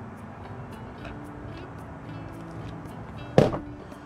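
A heavy glass beer mug set down on a wooden table near the end, one sharp clunk, over soft background music.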